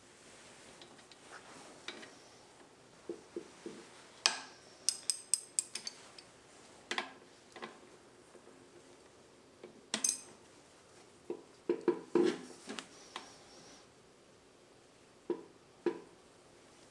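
Steel hand tools clinking and clicking on the connecting rod cap bolts of a motorcycle crankshaft. About five seconds in there is a run of about six quick, even ratchet clicks, and sharp metal clinks and knocks are scattered through the rest.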